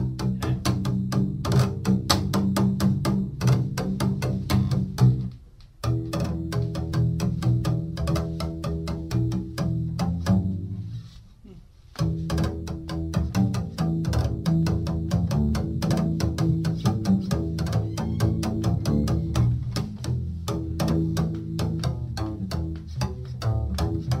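Double bass played col legno battuto: the wooden stick of the bow strikes the strings in rapid, dry, pitched taps. The playing breaks off briefly a little before six seconds and pauses again for about a second and a half around eleven seconds.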